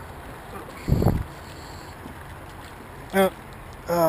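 Steady outdoor hiss on a small action-camera microphone, with one short low rumble about a second in, like a gust or a knock against the camera. A man's brief 'Oh' comes near the end.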